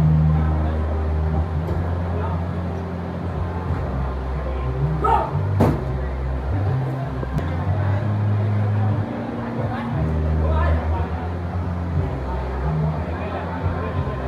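Indistinct voices over a steady low rumble, with one sharp knock about five and a half seconds in.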